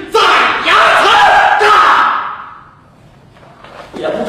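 A man's loud, animated storytelling voice in a large hall, falling away about two and a half seconds in to a brief lull before he picks up again.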